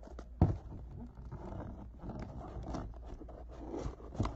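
A small cardboard box being cut and pried open: scratchy scraping and rubbing of cardboard with small clicks, after a sharp knock about half a second in.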